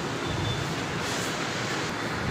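Steady background room noise: an even hiss with a low rumble underneath.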